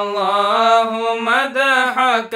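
Solo voice chanting an Arabic qasida, a devotional praise poem, in long held notes that glide up and down, with no instrument heard. The line breaks briefly about a second and a quarter in before the next phrase begins.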